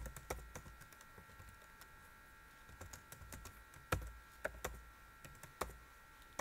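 Computer keyboard typing: quiet, irregular keystrokes, with a short gap in the first half and denser clusters of keys later on.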